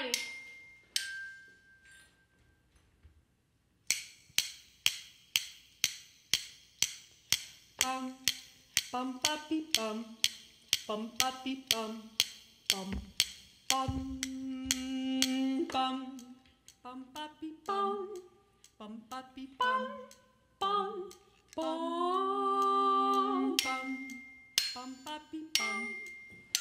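Glockenspiel-style bell kit struck with metal kitchen tongs in place of mallets: two single notes at the start, then a steady run of notes, two or three a second, from about four seconds in. From about eight seconds a woman's wordless singing joins the bells.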